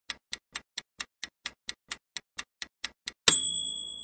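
Countdown-timer sound effect: clock ticks at about four a second for three seconds, then a bright chime that rings on and fades, marking the reveal of the answer.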